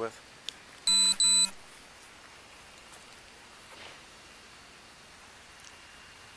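Two short, loud electronic beeps in quick succession about a second in, followed by faint outdoor background noise.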